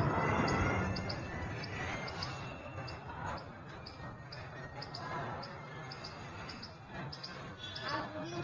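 Distant voices of children calling out across rooftops over a noisy outdoor background, with short high chirps repeating two or three times a second.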